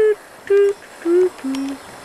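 A person humming a short jingle-like tune, four separate notes stepping down in pitch.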